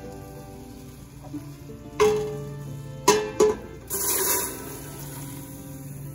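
A bowl clinks against the rim of a stainless steel pot a few times, then chopped jalapeños slide into simmering brine with a brief hissing rush about four seconds in. Soft background music runs underneath.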